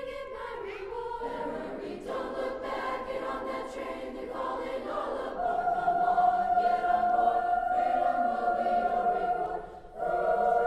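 A middle-school choir singing in harmony. About halfway through, the voices swell onto one long held note for about four seconds, which breaks off briefly just before the end.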